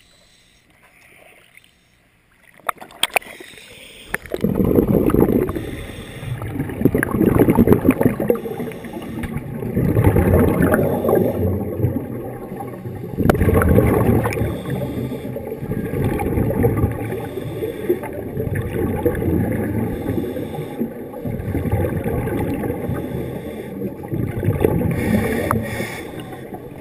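Scuba regulator breathing heard underwater: muffled surges of exhaled bubbles gurgling every two to three seconds, starting about four seconds in.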